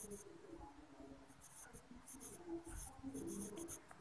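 Pen writing on lined notebook paper: a faint scratching that comes in short, irregular bursts with the strokes of the letters.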